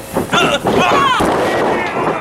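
A heavy thud of a wrestler's body crashing onto the wrestling ring mat a little over a second in, after a dive from the top rope. Spectators shout and yell around it.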